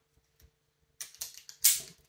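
Metal climbing hardware clicking and clinking as a small pulley and carabiner are handled on a rope: a few light clicks from about a second in, then one sharper click.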